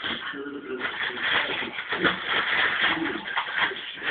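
Wrapping paper rustling and crackling as dogs tear at a Christmas present, dense and busy from about a second in.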